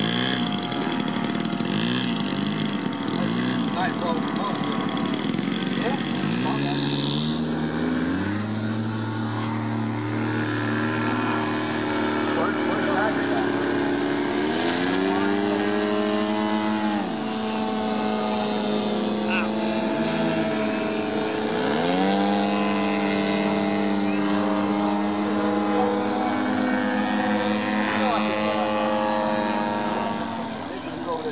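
Radio-controlled aerobatic airplane's motor and propeller running at changing throttle, the pitch stepping up and holding, then gliding up and down as the plane manoeuvres and passes.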